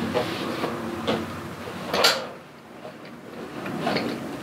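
Metal pole of a bedside laptop table being twisted down into its base tube: a grinding scrape of metal on metal with several knocks, the loudest about two seconds in, then a quieter stretch.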